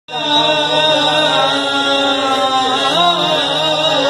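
Qawwali singing: a male lead voice bending and gliding in pitch, sung into a microphone over the steady held notes of a harmonium.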